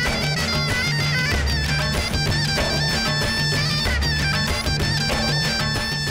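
Fast Black Sea horon dance music: a high melody line over a steady pulsing bass beat.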